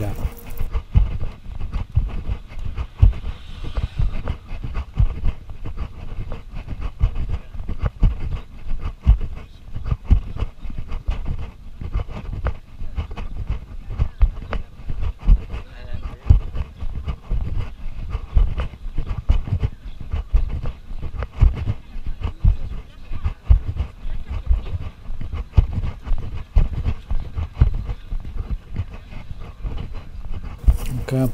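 Wind buffeting a camera microphone outdoors: a continuous low rumble broken by many irregular thumps.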